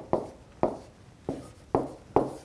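Pen writing on an interactive whiteboard screen: about four short, sharp taps and scrapes as letters are written.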